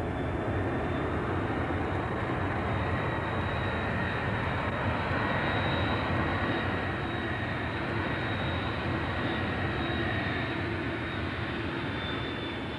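Jet airliner's engines running steadily, a continuous rush with a steady high-pitched whine over it.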